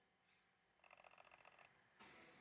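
Near silence, broken about a second in by a faint rapid pulsing sound, roughly ten pulses a second, that lasts under a second.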